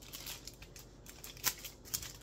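Plastic wrapping on a roll of scented kitchen trash bags crinkling and clicking as it is handled, with two sharper crackles in the second half.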